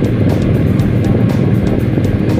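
Motorcycle riding noise: a steady low engine and wind rumble on the microphone, with music playing along.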